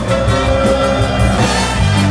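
Ska band playing live and loud, with electric guitar, drum kit and a saxophone in the horn section.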